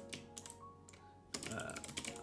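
Typing on a computer keyboard: a quieter stretch, then a quick run of key clicks starting a little past halfway.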